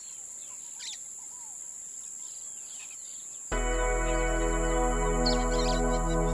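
Birds chirping over a steady high-pitched ringing, a woodland ambience fading in. About three and a half seconds in, a held chord of the song's intro enters suddenly and much louder.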